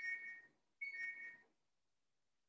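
Faint electronic two-note chime, a higher tone stepping down to a slightly lower one, sounding twice about a second apart.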